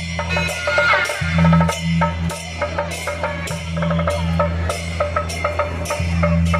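Beiguan processional music: suona shawms playing a reedy melody over quick drum, wooden clapper and cymbal strikes, with a steady low hum underneath.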